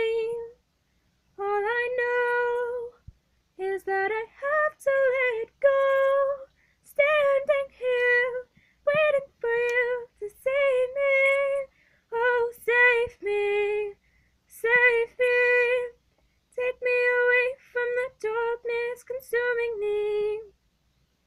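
A woman singing alone with no accompaniment, in short held phrases separated by brief silences.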